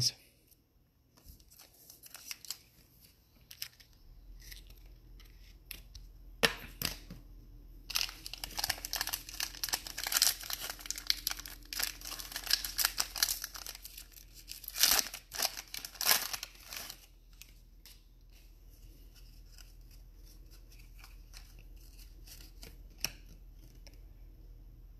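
A foil trading-card pack wrapper being torn open and crinkled by hand. There is a burst of crackling from about 8 to 17 seconds in, then quieter rustling as the cards are handled.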